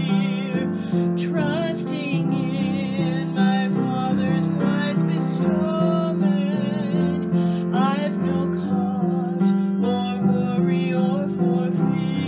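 Upright piano playing a slow hymn accompaniment in steady chords, with a woman's singing voice wavering in vibrato over it in phrases.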